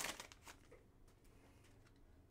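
Faint crinkling of a foil trading-card pack torn open by hand, dying away within the first half second into near silence, with one faint tick about half a second in.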